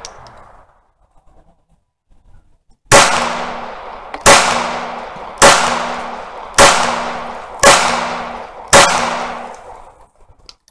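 A handgun fired six times, starting about three seconds in, roughly one shot a second. Each shot trails off in a long echo.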